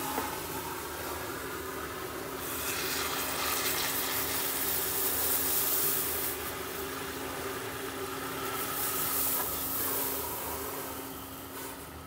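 Liquid nitrogen hissing and boiling off as it is poured through a plastic funnel into the infrared microscope's detector dewar, to cool the detector. The hiss swells about a third of the way in and again near the end, over a steady low hum.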